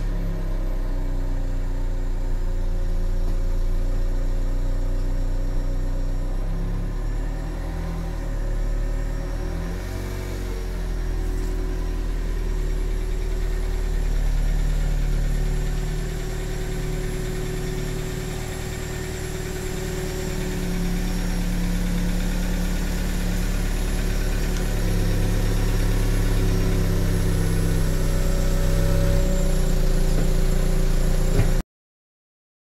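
Vauxhall Corsa SRi's petrol engine running at low revs as the car reverses slowly into a garage, its note shifting slightly up and down.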